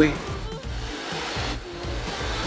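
Soft background music under a steady hiss of noise.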